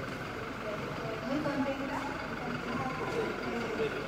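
Indistinct voices talking quietly in the background of a large room, over a steady low background noise.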